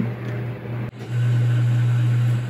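X-ray machine making an exposure: a steady low electrical hum that starts about a second in.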